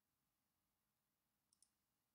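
Near silence, with a very faint click about one and a half seconds in.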